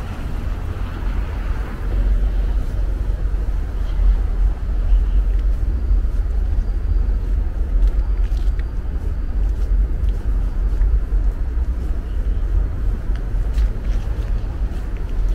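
Wind buffeting the microphone: a loud, unsteady low rumble that carries on without a break.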